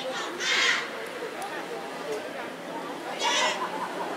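A large group of students in a cheering section shouting together: one loud, wavering group shout about half a second in and another near the end, with lower crowd noise between.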